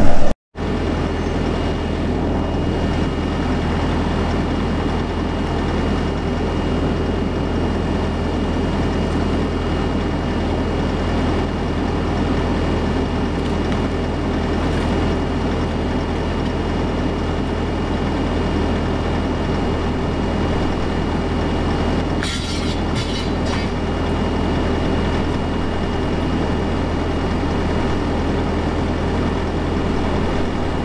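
Bobcat Toolcat 5600 utility vehicle's diesel engine idling steadily while the machine stands parked. There is a short burst of clatter a little over twenty seconds in.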